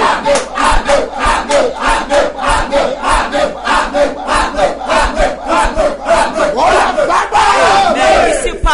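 A man's voice in loud, rapid fervent prayer, the syllables coming in an even rhythm of about four a second, with a drawn-out gliding call near the end.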